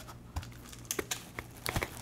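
Cardboard box flaps being pulled open by hand: a handful of light, irregular clicks, taps and scrapes of cardboard.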